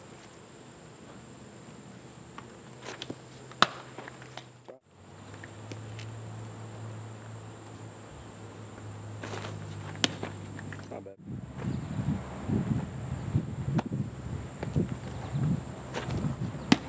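Outdoor ball-field ambience: a steady high-pitched drone over a low hum, with a few sharp clicks. Two brief drop-outs break it up, and in the last few seconds irregular muffled low sounds and distant voices come in.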